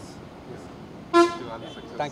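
A vehicle horn gives one short, loud toot about a second in, with a fainter tone trailing off over the next half second, over low background voices.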